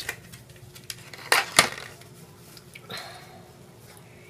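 Handling noise from small paper cards and a small clip worked by hand close to the microphone: a few sharp clicks and taps, the two loudest close together about a second and a half in.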